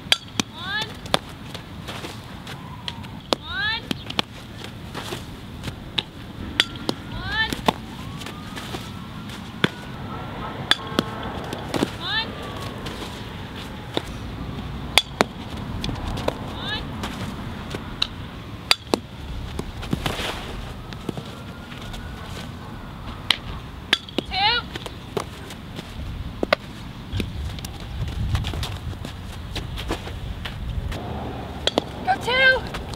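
Softball fielding practice on a dirt infield: sharp cracks and pops of softballs being hit and smacking into a fielder's glove, coming every second or few seconds over outdoor background noise, with short chirping calls now and then.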